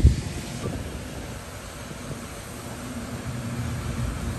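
Steady low rumble and hiss of outdoor background noise, with a brief thump right at the start.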